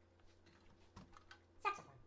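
Faint clicks and knocks of a flute and an alto saxophone being handled and set down, their metal keys tapping. Near the end comes one short, louder squeak that drops quickly in pitch.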